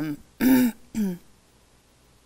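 A woman clearing her throat with a voiced cough about half a second in, followed by a shorter falling grunt about a second in.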